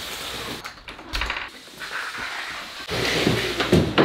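A large cardboard bike box being handled indoors: knocks and a door closing, then the box scraping and bumping as it is pushed across a wooden floor near the end.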